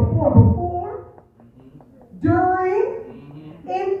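A woman preaching, with a drawn-out phrase and a short pause about a second in.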